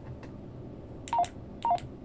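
Baofeng UV-5R handheld radio's keypad beeps as its buttons are pressed: two short beeps about half a second apart, each dropping from a higher to a lower note, with faint button clicks.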